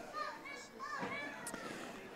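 Faint, distant high-pitched voices calling and shouting across the stadium, with short gliding calls.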